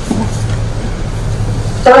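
A pause in a woman's speech at a microphone, filled by a steady low background hum; her voice comes back just before the end.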